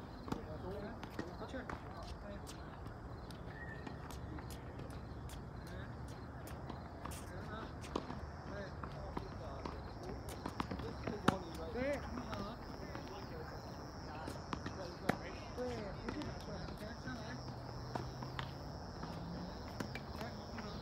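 Tennis racket strikes on a ball during a baseline rally, sharp hits a second or more apart, the loudest a little past the middle, with footsteps on the hard court. A high pulsing buzz, about two pulses a second, comes in about halfway through.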